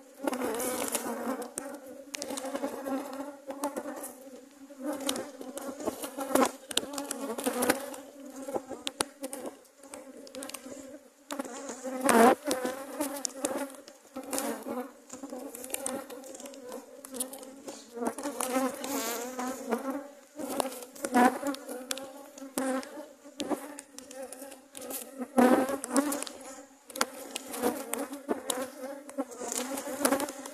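Honey bees buzzing densely around an opened hive, with single bees flying close past and wavering up and down in pitch. A couple of louder knocks stand out, about midway and near the end.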